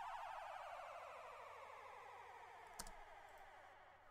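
A quiet downward-sweeping sound effect: a warbling tone that glides steadily down in pitch and fades out over about four seconds, a drop effect placed just before a hip-hop beat drops. A single click a little before three seconds in.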